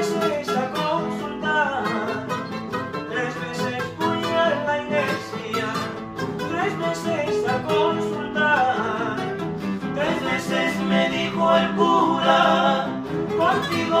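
Three acoustic guitars strumming and picking together in an instrumental passage of an old Ecuadorian song, with male voices starting to sing again near the end.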